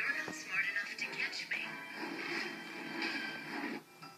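Sound of a television show picked up off the set's speaker: music with voices over it, dropping away briefly near the end at a cut.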